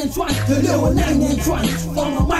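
Rapping in Malagasy over an old-school hip hop beat, with a held bass line and regular drum hits.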